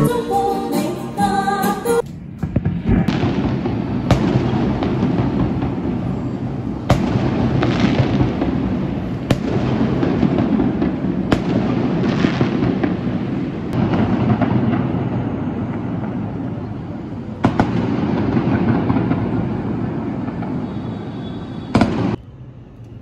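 A moment of live music, then fireworks: a steady crackling with a sharp bang every few seconds.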